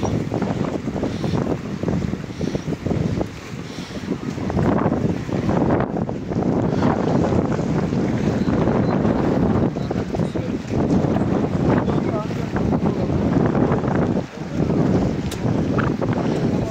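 Wind buffeting the microphone: a continuous low rumble that swells and drops with the gusts.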